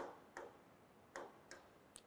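Near silence with five faint, short clicks at uneven intervals.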